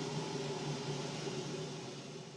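Steady low hum with an even hiss over it, like a small motor or fan running.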